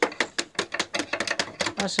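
Wooden mallet tapping the ends of a bundle of reeds held in a wooden press, a rapid, uneven series of sharp knocks that drive the reeds straight and level before they are pressed into a hive wall.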